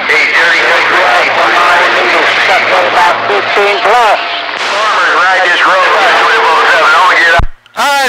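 CB radio receiving skip: several distant stations talking over one another through static, the voices garbled and hard to make out. The audio cuts off suddenly with a short low thump near the end.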